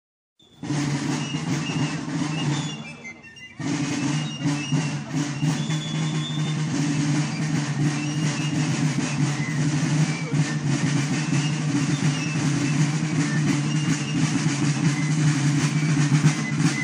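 Military-style drum corps of a folk march playing snare drums in a steady beat as it approaches, with a few short high notes above. The sound starts about half a second in and dips briefly around three seconds.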